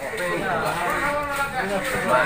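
Mostly speech: people talking, with drawn-out, wavering voiced sounds.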